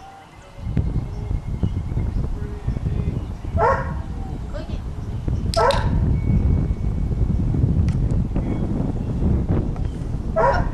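Puppy giving two short, high yips, about three and a half and five and a half seconds in, over a steady low rumble.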